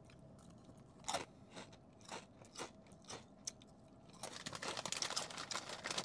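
A mouth chewing Fritos queso-flavored corn chips, with crisp crunches about every half second. From about four seconds in the crackling turns denser and more continuous.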